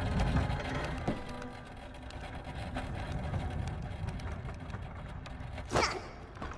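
Hand-pushed cart loaded with canisters rolling, its small wheels and load rattling as a fast, steady run of clicks. A short, louder sound comes just before the end.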